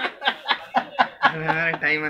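A man chuckling in short, quick bursts of laughter, followed by a drawn-out voiced sound.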